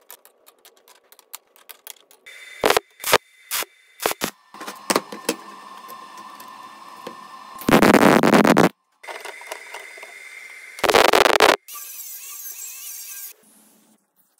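Quick-cut run of metalworking sounds: scattered sharp clicks and knocks, then two short, loud bursts of arc-welding crackle in the second half as rebar rods are welded to a steel plate.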